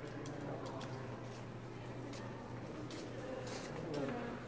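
Indoor gallery room tone: a steady low hum with faint, indistinct voices and scattered light clicks of footsteps on a hard floor.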